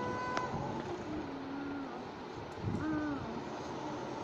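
A young child's voice making two soft, drawn-out hooting "ooh" sounds: a long one about a second in, then a shorter one that rises and falls near the three-second mark.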